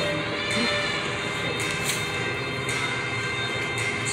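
Shop background music playing over a steady rush of room noise.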